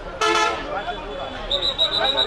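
A vehicle horn gives one short toot, the loudest sound here, over the chatter of a street crowd.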